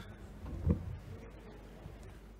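Microphone handling noise as a handheld mic is passed to the next speaker, with one low bump about two-thirds of a second in, over a steady low hum from the sound system.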